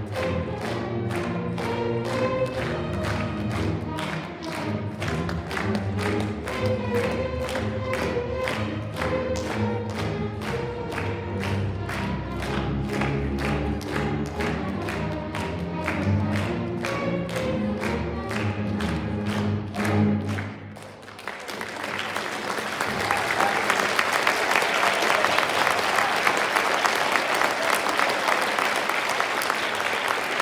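A string orchestra of violins, violas, cellos and double basses plays a piece and stops with a final chord about two-thirds of the way through. Then audience applause starts, swells within a couple of seconds and continues.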